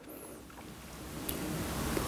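Faint, even background hiss that slowly grows louder, with no distinct sound in it.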